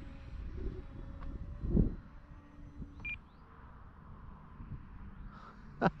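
Wind buffeting an outdoor microphone, with a stronger gust about two seconds in. A short, high electronic beep sounds about three seconds in.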